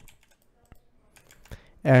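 Computer keyboard keys pressed a few times: faint, scattered clicks, followed near the end by a spoken word.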